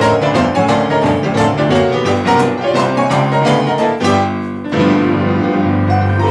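Boogie-woogie piano duet on an acoustic grand piano and a digital stage piano: fast rolling runs and rhythmic chords, then two chords struck and held ringing near the end.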